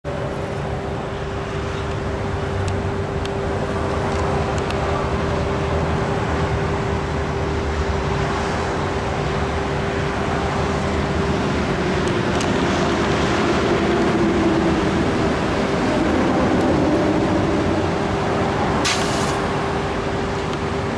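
Road traffic passing on the highway beside the lot, swelling as vehicles go by, over a steady hum. A brief hiss comes near the end.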